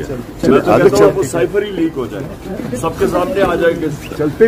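Men's voices talking over one another in a close crowd, with no single clear speaker.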